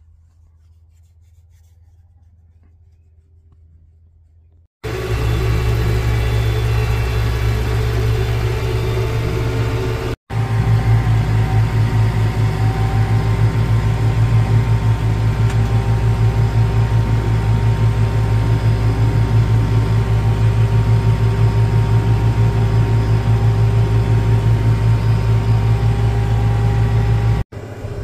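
Tractor engine running steadily close by, hitched to a fertilizer buggy, with a fast even pulse. It comes in suddenly about five seconds in, after quiet, and drops out for an instant about ten seconds in.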